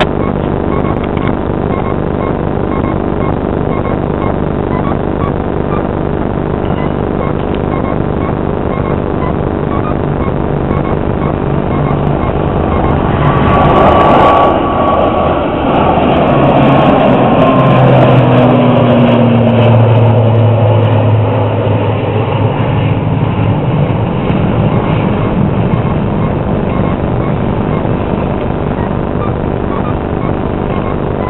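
Jet airliner passing overhead after takeoff, over a steady drone. About halfway through the engine noise swells; its whine and hum then fall in pitch as it goes by, and it fades back toward the drone.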